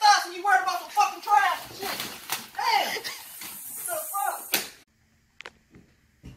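A person's voice talking in quick bursts that the words cannot be made out from, stopping about three-quarters of the way through. Near silence follows, broken by one sharp click.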